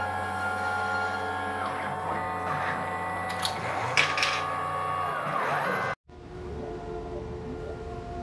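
Stepper motors of 3D-printed robot arms whining as the joints move, several steady tones that shift and glide in pitch as each move changes, with two sharp clicks a few seconds in. It cuts off suddenly about 6 s in and gives way to a quieter motor whine from another arm.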